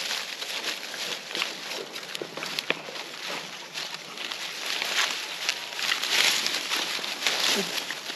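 Pigs rooting and chewing through a pile of dry corn husks and stalks: a continuous crackling rustle of dry leaves with many sharp snaps and crunches.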